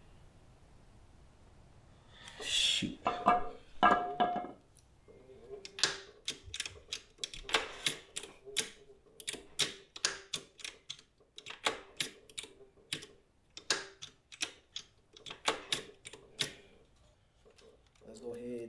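Hand tools working on the exposed gearshift detent lever of a 1985 Honda ATC 125M engine. A short metallic clatter comes a few seconds in, then a long run of irregular sharp clicks, one or two a second.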